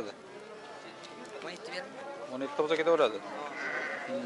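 A sheep bleating: one wavering call about two and a half seconds in, over background voices.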